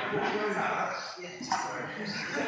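Indistinct voices talking, with a sudden louder sound about one and a half seconds in.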